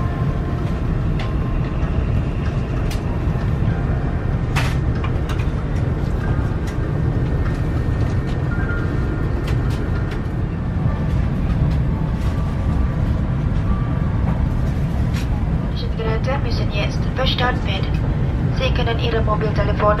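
Steady low rumble of an Airbus A350's cabin air-conditioning while the aircraft is parked, with faint music over it. About four seconds before the end, a public-address announcement begins.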